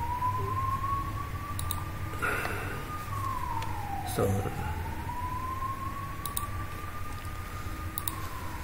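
A siren wailing in the background: a single tone that climbs slowly and then drops quickly, repeating about every five seconds, over a low steady hum.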